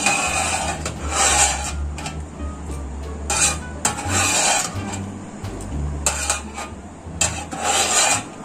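Metal fork scraping across a metal baking tray, gathering leftover sauce in a series of short strokes with light clinks, over a steady low hum.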